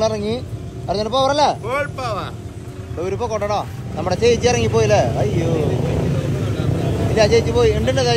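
Men talking beside a bus, over the steady low rumble of its engine idling close by.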